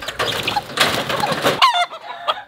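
A Roundhead gamecock flapping and struggling against the wire pen as it is caught by hand, then giving one short squawk near the end.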